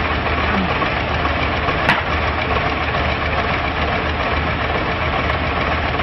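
Diesel engine of an ABT40 trailer concrete pump running steadily under work alongside a drum concrete mixer, with one sharp knock about two seconds in.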